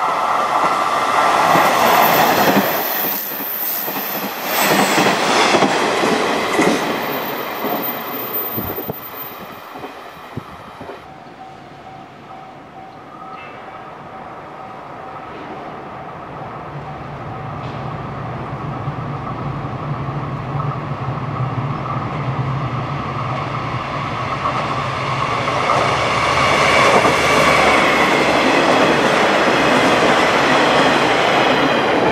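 Diesel railcar trains (JR KiHa 48 joyful trains) passing on the line, twice. In the first ten seconds or so a train goes by loudly with wheel and rail-joint clatter. Then a second one is heard approaching as a low engine hum that grows steadily louder until it passes loudly near the end.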